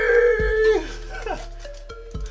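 A man's drawn-out shout, "Nani!", held on one note and ending under a second in, followed by quieter voices and music.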